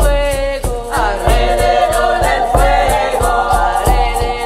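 Devotional song with layered voices singing a slow melody, over a steady high percussion pulse and a deep drum beat about every second and a quarter.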